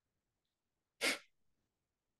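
A single sharp, forceful exhalation through the nose about a second in: a kapalbhati breath, short and sudden, fading within about a third of a second.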